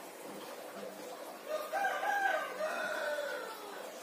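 A rooster crowing once, a single arching call about two seconds long that starts about a second and a half in.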